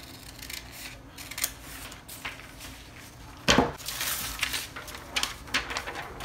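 Scissors snipping through pattern paper, with the paper rustling against a plastic table cover. About three and a half seconds in, a louder knock as the scissors are set down on the table, followed by paper being handled.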